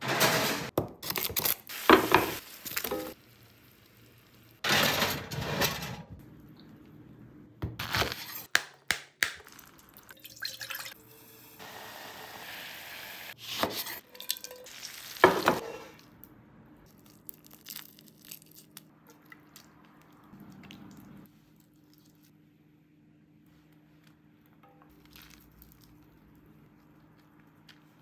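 Kitchen handling sounds: pans, cookware and utensils knocking and clattering in quick succession. Midway there are a couple of seconds of a pot of liquid bubbling at the boil. After one last knock it goes quiet, leaving only a faint steady hum.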